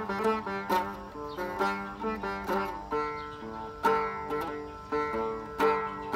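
Chapei dang veng, the Khmer long-necked two-string lute, played solo: a plucked melody of sharply attacked notes that ring and fade, with quick runs broken by a few longer held notes.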